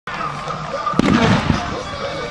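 A sharp pyrotechnic bang about a second in, followed by a brief loud burst of noise, over crowd noise and voices.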